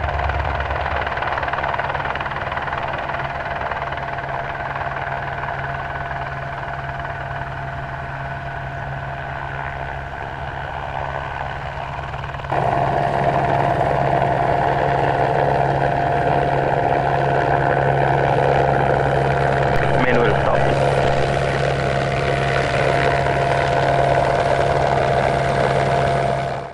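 Aircraft propulsion running with a steady low hum and a high whine. The sound jumps louder about halfway through.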